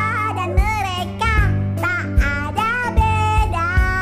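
A children's song: high, child-like voices singing in Indonesian over a backing band with bass and a steady beat.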